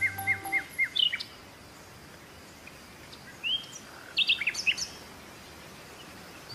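Small birds chirping: a quick run of short chirps at the start, then a quiet gap and two more bursts of higher chirps in the middle.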